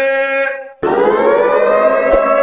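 A sehri siren starting up about a second in, its pitch rising and then holding as a steady wail, sounded to mark sehri time during Ramadan.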